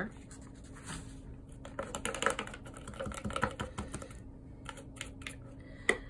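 Paper and a kraft-paper folder being handled on a tabletop: a loose scatter of light taps, clicks and rustles as a sheet is folded and put away.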